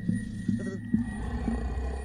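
Deep, low growl of an animated anglerfish looming out of the dark, a cartoon film sound effect.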